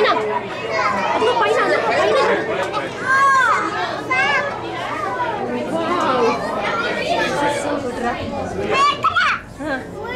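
Several people talking at once, with children's high voices among them.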